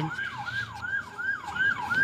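Siren in yelp mode: a steady run of quick sweeps, each rising briefly and then falling to a lower pitch, about three a second.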